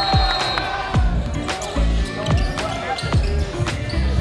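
Background music with a steady beat and deep bass notes that slide down in pitch, repeating about once a second.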